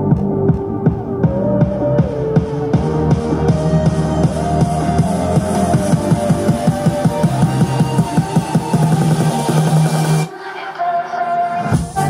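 Electronic pop music with a steady drum beat and heavy bass, played through Genesis Helium 200 MDF desktop speakers with rear bass-reflex ports as a sound test, picked up by a microphone in front of them. About ten seconds in the bass and drums briefly drop out, then come back.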